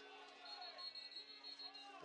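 Faint distant stadium background with a thin, high, steady whistle tone lasting about a second and a half, starting about half a second in: a referee's whistle stopping play.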